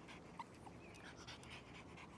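A small dog panting faintly, in otherwise near silence.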